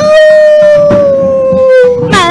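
A female singer holding one long, high sung note that sinks slightly in pitch over about two seconds, with little accompaniment behind it.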